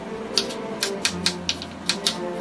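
Kitchen knife chopping firm raw banana (nenthran) on a wooden cutting board: a run of quick, sharp knocks of the blade hitting the board, about three or four a second, over soft background music.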